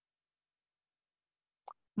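Dead silence on the video-call audio, broken about three quarters of the way in by a single brief soft pop, just before speech starts at the very end.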